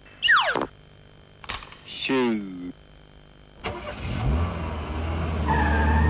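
Two quick falling pitch slides of cartoon sound effects, the first a sharp swoop and the second slower and buzzier, for an animated lion sawing at a violin. About three and a half seconds in, a car engine starts and runs with a steady low hum, growing louder.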